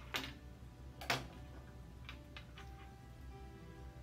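Scissors snipping hemp twine: two sharp snips, the louder one about a second in, then a few softer clicks about two seconds in, over soft background music.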